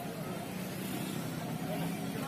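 Several people's voices talking in the background over a steady low hum, such as a running engine or traffic.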